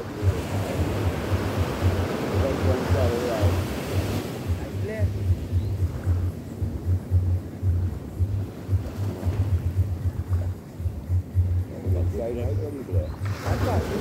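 Small sea waves breaking and washing up a sandy beach among rocks, the surf swelling twice. Under it runs a low, uneven rumble of wind on the microphone.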